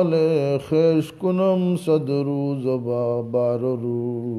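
A lone man's voice singing an unaccompanied Urdu naat in praise of the Prophet, drawing out long, wavering, ornamented notes. Partway through the line it steps down to a lower, steadier held note.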